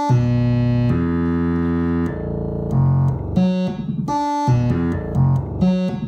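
Modular synthesizer wavetable oscillator (Mutable Instruments Braids in wavetable mode) playing a stepped sequence from a Baby-8 eight-step sequencer: held notes rich in overtones, each step a different pitch, changing every half second to a second.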